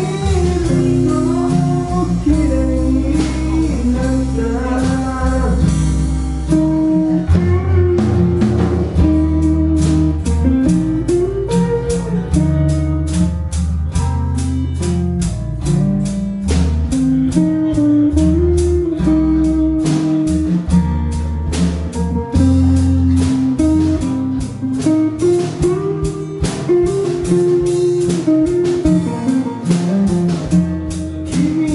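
Live band playing an instrumental passage: a guitar melody over strummed acoustic guitar, an electric bass line and a drum kit keeping a steady beat.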